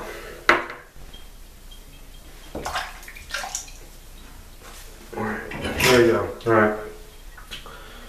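Small metal clicks and clinks of a double-edge safety razor being handled at the sink: one sharp click about half a second in, then a few lighter knocks. A man's voice is heard briefly near the middle.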